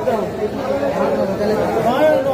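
Background chatter of several voices talking at once, with no chopping in between.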